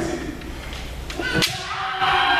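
A single sharp crack of a bamboo shinai striking, about one and a half seconds in, over a hall full of voices. A loud kiai shout starts right at the end.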